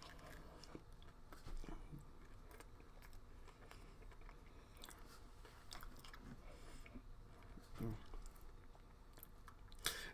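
Faint chewing of a peanut butter cup filled with candy-shelled Reese's Pieces, with small scattered crunches and clicks from the little candies.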